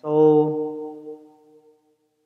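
A man's voice drawing out the word "So" as one held, steady-pitched syllable that fades away over about a second and a half.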